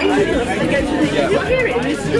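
Indistinct conversation at a dinner table: several voices talking, over the background chatter of a busy restaurant dining room.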